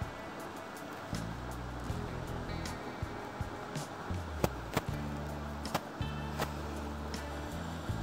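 Background music over an Usha Janome electric sewing machine whose motor runs in short stretches, with sharp clicks from the machine and fabric handling.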